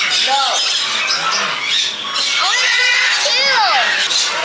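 Parrots squawking: several short calls that rise and fall in pitch, the loudest a few arching squawks near the end.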